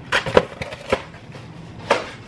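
Several sharp knocks and clicks of kitchen items being handled on a countertop, about four in two seconds, the loudest near the end.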